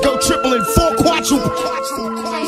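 Hip-hop music: held synth tones with a rapped vocal over them, the heavy bass dropped out.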